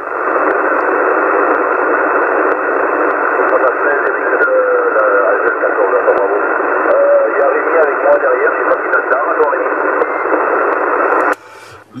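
Hiss from a 27 MHz CB transceiver receiving in upper sideband, with a faint, barely intelligible voice of a weak station under the noise. The hiss cuts off suddenly near the end as the set is switched to transmit.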